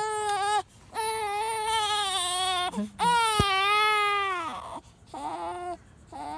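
Newborn baby crying: four wails, the middle two long and drawn out, the first and last short.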